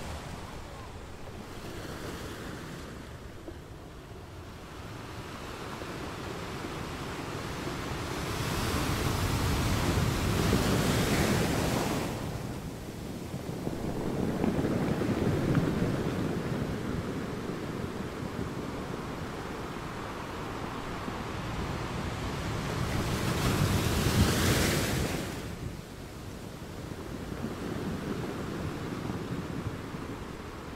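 Ocean surf breaking on a rocky, pebble shore, the wash rising and falling in slow surges. A big breaker builds from about eight seconds in and falls away near twelve, and another peaks around twenty-four seconds.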